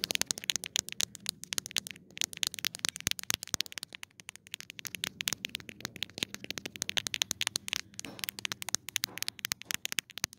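Fingers tapping rapidly on a phone's camera lens, many sharp little taps a second, with a short scratchy rub about eight seconds in.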